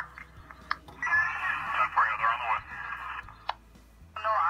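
Speech played through a small phone's loudspeaker, thin and without low tones, with two short clicks, one before it and one after.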